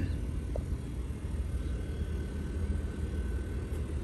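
A steady low rumble with no clear pitch, with a person clearing their throat at the very start.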